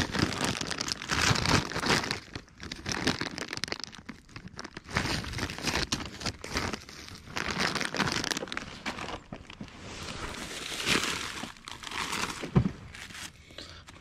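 Plastic bag of bait sardines crinkling and rustling in irregular bursts as it is opened and handled and a sardine is pulled out.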